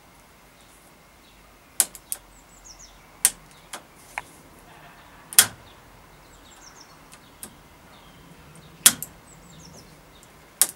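A freshly cleaned Shimano Altus ST-CT90 trigger shifter, its top cover off, clicking as its lever is pushed through the gears: about nine sharp clicks at irregular intervals, the loudest about five and a half seconds in and near nine seconds in. The clicks are its ratchet pawls engaging as it indexes, the sign that the once-seized mechanism now works.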